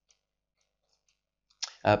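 Near silence with a few faint ticks, then a voice saying a short hesitant 'uh' near the end.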